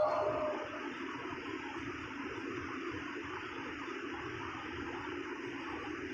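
Steady, even background room noise with no voice, after the last chanted line fades out in the first half-second.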